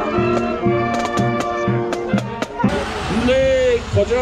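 Marching band playing, with saxophones and clarinets over drums keeping a steady beat of about four strikes a second. About two and a half seconds in, the music cuts off and a voice is heard over a steady background noise.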